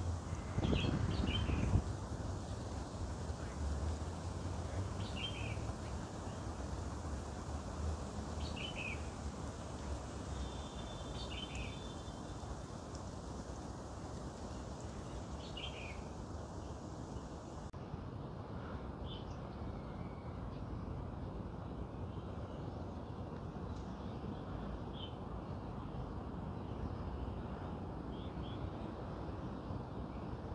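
Short, high chirps from a small bird, repeated every two to four seconds over a steady outdoor background hiss. A brief louder noise comes about a second in.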